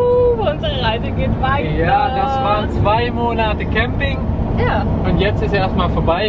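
A Volkswagen camper van driving: steady engine and road rumble heard inside the cabin, under two people talking.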